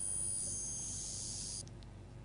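A high-pitched steady whine made of several tones at once, stopping suddenly about a second and a half in.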